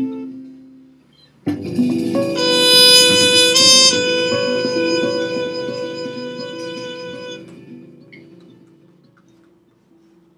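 Muted cornet ending a phrase, then, after a brief pause, playing a final long held note over a closing accompaniment chord. The chord and note ring and fade away slowly over several seconds.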